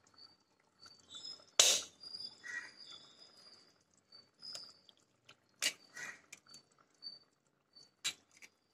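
Raw eggs cracked open by hand over a clay pot of simmering gravy: a few sharp shell cracks, the loudest about a second and a half in and another near six seconds, with faint soft sounds between.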